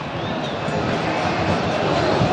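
Football stadium crowd noise, growing louder as a low shot goes into the net for a home goal.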